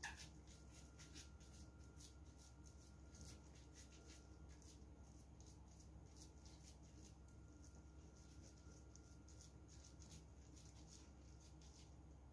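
Faint, irregular soft squishing and rustling as a hand in a thin plastic glove presses raw ground-meat meatloaf mixture into a baking dish, over a faint steady low hum.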